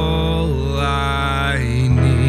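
Live worship band music: a voice holds one long note over acoustic guitar and electric bass, with a steady low bass line underneath.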